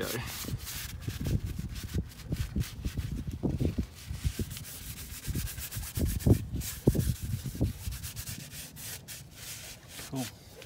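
Paper towel wiped back and forth over a fibreglass boat hull's gel coat, a rubbing sound in uneven strokes, cleaning the chipped area with acetone before filling. A few strokes are louder, about three and a half, six and seven seconds in.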